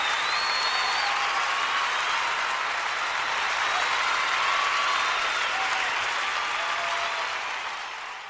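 Live audience applauding, with a few high whistles over the clapping, fading out near the end.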